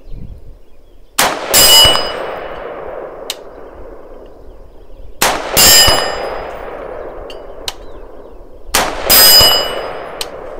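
Three AR-15 rifle shots, about four seconds apart, each with the ringing clang of a steel target plate being hit downrange; fainter distant shots sound in between.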